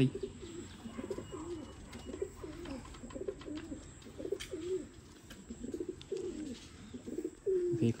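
Domestic pigeons cooing: a run of short, low coos that rise and fall, one or two a second.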